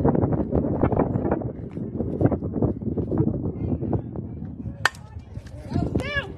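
Spectators chattering, then, a little under five seconds in, one sharp crack of a softball bat hitting a pitch, followed at once by a shout from the crowd.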